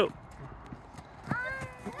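Children's running footsteps on playground wood chips as they push a merry-go-round round, a few soft scuffs and knocks, with a brief high child's call about a second and a half in.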